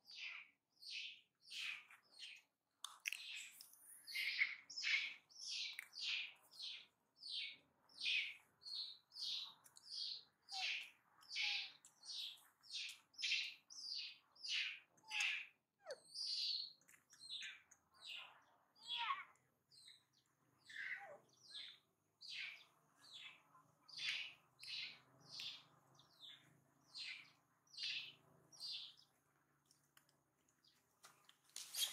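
Newborn macaque squeaking, a long run of short, high-pitched chirps about two a second, with a few lower sliding calls about two-thirds of the way through.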